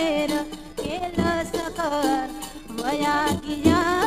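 Gujarati folk song: a woman's voice singing an ornamented, wavering melody over a steady held drone note, with a few drum strokes.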